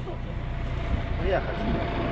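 Farm tractor's diesel engine running steadily at low revs, a low even rumble, with a faint steady whine over it.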